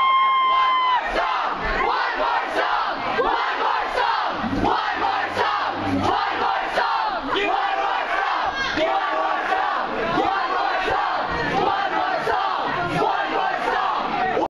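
Concert crowd cheering and screaming, many voices overlapping, with one high scream held through about the first second.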